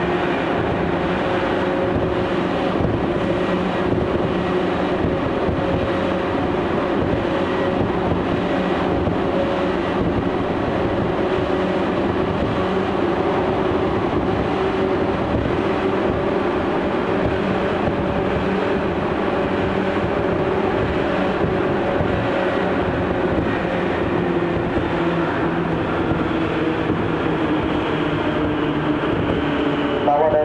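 Tokyu 8500 series train running at steady speed, heard from inside the passenger car: a continuous rumble of wheels on rail with several steady motor hums, in the underground section near Shibuya.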